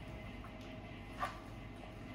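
Hands working chicken pieces through a thick yogurt marinade in a stainless steel bowl: faint wet squelching over a steady low hum, with one short, louder sound a little past halfway.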